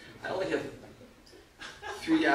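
A man's brief chuckle.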